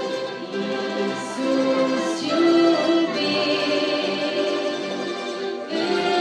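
Orchestra with a large violin section playing an instrumental passage of held notes that change every half-second to a second.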